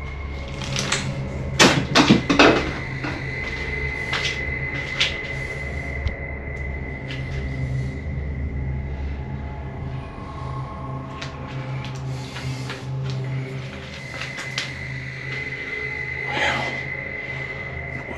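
Steel cabinet doors and shelving handled and opened, with a cluster of sharp metal knocks and clanks about two seconds in and a few lighter knocks later. A steady droning background music bed runs underneath.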